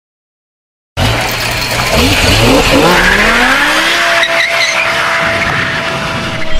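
Drift car at full throttle with tyres squealing, cutting in abruptly about a second in. The engine note climbs and then holds steady at high revs.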